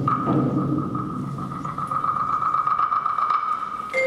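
Contemporary chamber ensemble music: a single thin, steady high note held without change over a dense, irregular low rumbling texture.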